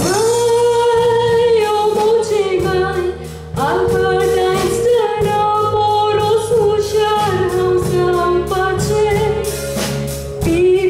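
A woman singing a Konkani tiatr song into a stage microphone over backing instruments. She holds long notes that bend in pitch, with a short break about three and a half seconds in before she resumes.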